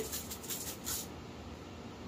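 Shaker jar of dried garlic and herb seasoning shaken over a bowl of slaw: a quick run of faint, light rattling ticks through about the first second.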